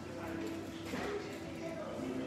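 Indistinct voices of people talking in a room.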